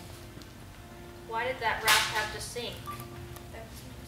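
A short stretch of voice with a single sharp crack in the middle, over faint steady sustained tones.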